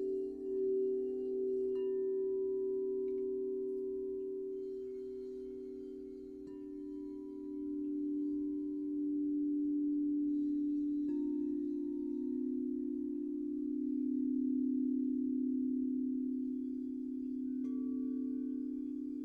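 Crystal singing bowls ringing in long, overlapping sustained tones, with a new bowl sounded about four times, every few seconds. The held tones swell and waver slowly as they ring on.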